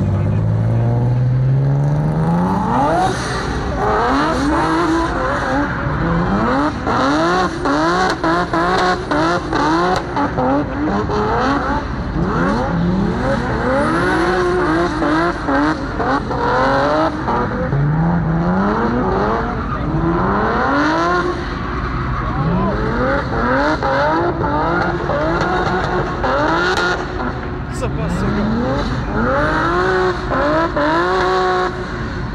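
A car engine revved hard over and over, its pitch climbing and dropping back every second or two.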